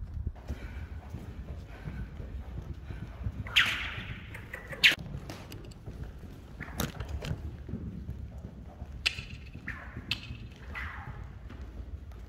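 Hoofbeats of a young Korean warmblood filly moving on sand footing, over a steady low rumble. A few sharp cracks are scattered through.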